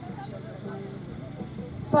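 Low background chatter of people talking, with a louder man's voice starting right at the end.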